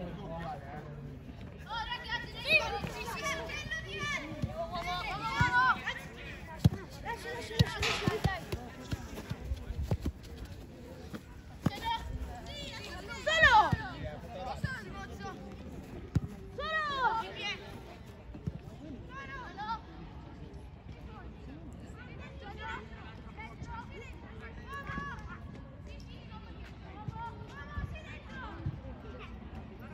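Youth football match on artificial turf: players and coaches shouting and calling across the pitch, with a few dull thuds of the ball being kicked. The loudest calls come about halfway through and again a few seconds later.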